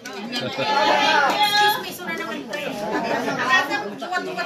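Many people talking at once, their voices overlapping in chatter.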